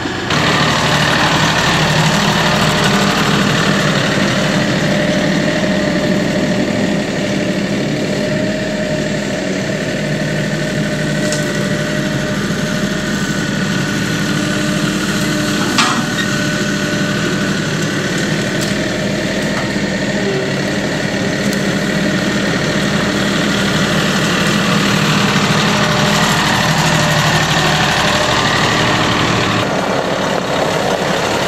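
A Kioti tractor's diesel engine running steadily, with one sharp knock about halfway through.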